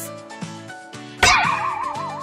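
Light background music, then about a second in a sudden loud cartoon sound effect: a hit followed by a wavering tone that wobbles up and down about four times a second.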